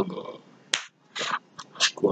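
A man snapping his fingers: one sharp snap a little under a second in, followed by two softer, hissier snaps at roughly even half-second spacing.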